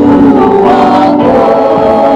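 A congregation singing a hymn together in chorus, many voices at once, loud and unbroken.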